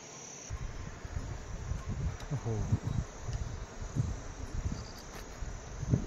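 Insects chirring steadily at a high pitch over the open hillside, with an irregular low rumble on the microphone from about half a second in.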